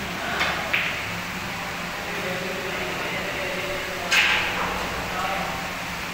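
Snooker cue tip striking the cue ball with a short click under a second in, and a louder, sharper click about four seconds in, over a steady hum and background voices in the hall.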